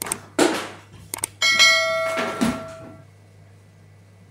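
Two quick mouse clicks followed by a bright bell ding that rings for about a second and a half, as in a subscribe-and-notification-bell sound effect. A few softer clattering noises come around it.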